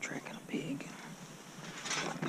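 A man whispering in short broken phrases.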